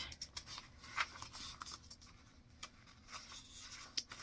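Faint rustling and scraping of paper as a tag is pulled from a pocket and a folded insert of a handmade paper-bag journal is lifted, with a few short crisp paper clicks.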